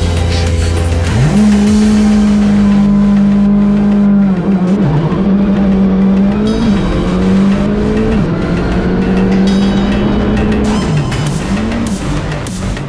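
Rally car engine heard from inside the cabin, held at high revs with the pitch dropping and climbing back several times, in quick swings near the end, as it is driven hard on a dirt stage. Music plays underneath.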